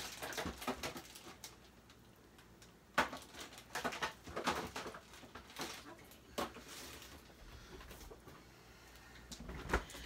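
Scattered clicks and knocks of kitchen utensils and containers being handled, as when bouillon paste is spooned out of a jar, with sharper knocks about three seconds in, at about six and a half seconds and just before the end.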